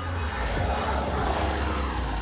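Travelling along a road in a vehicle: a steady low engine hum under wind and road noise that swells a little about a second in.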